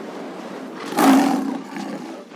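A lion's roar sound effect about a second in: it swells suddenly, is the loudest sound here, and fades over about half a second. It sits over a steady rushing noise.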